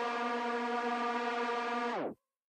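The last held note of a sped-up K-pop song: one steady, unchanging tone with its overtones, which cuts off abruptly just as the track ends.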